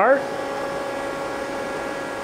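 Steady machinery hum: an even whir with a few constant tones, unchanging throughout.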